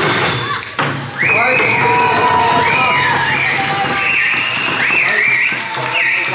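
Eisa drumming and music stopping with a last hit under a second in. A shrill Okinawan finger whistle (yubibue) then warbles up and down over and over above voices.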